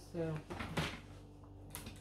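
Tie-dye print fabric rustling and sliding as it is pulled onto the cutting table, with one short sharp tap near the end.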